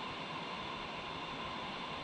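Steady rushing noise of wind buffeting the microphone, with a flowing river under it.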